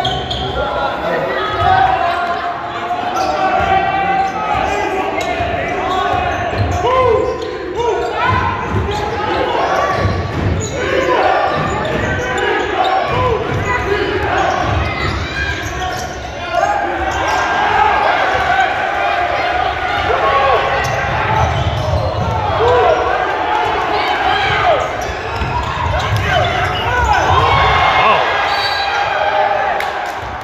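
Game sounds of a basketball game in a gym: the ball bouncing on the hardwood court and players' footfalls, under a steady mix of spectators' voices and shouts echoing in the large hall.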